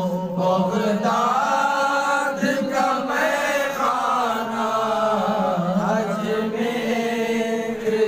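Sufi devotional chanting of a zikr: voices sing a melodic line without a break, with long held notes.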